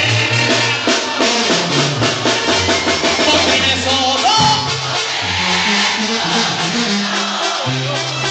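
Live band music played loud over a PA, with a man singing lead into a microphone over drums and deep held bass notes.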